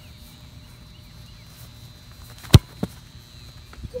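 A soccer ball kicked hard in a shot: one sharp, loud strike about two and a half seconds in, followed by a fainter knock a moment later and a dull thud near the end.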